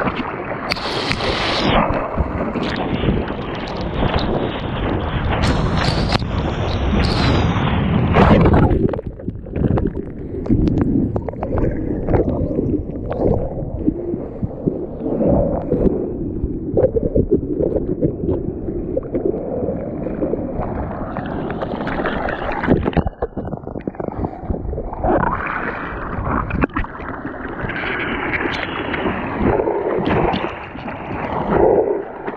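Breaking whitewater rushing and splashing around a camera held at the waterline. It is heavy and continuous for the first eight seconds or so, then turns to choppier sloshing and gurgling that rises and falls.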